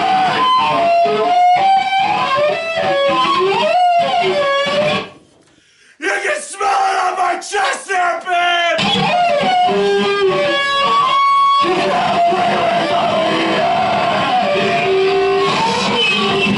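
Live power electronics noise performance: loud distorted electronic noise with pitched tones that slide and shift, and shouted vocals through heavy processing. The sound cuts out for about a second around five seconds in, then comes back just as dense.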